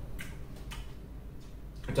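Low steady room hum with a couple of faint, short ticks early on.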